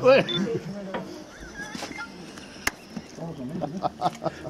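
Chatter from a small group of people, fading after a voice in the first half second, with one sharp click a little under three seconds in.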